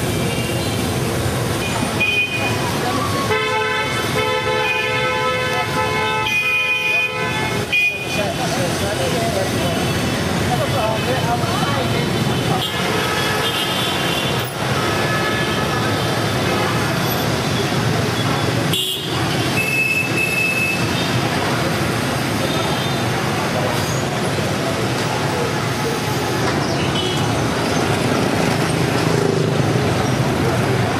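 Busy street traffic of motor scooters and cars running past steadily, with horns honking: a long run of honks about three to seven seconds in and shorter toots later.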